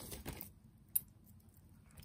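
Faint rustling of a plastic bag as a hand reaches into it for jewelry, then a single short, sharp click about a second in as a small piece of metal jewelry knocks against something.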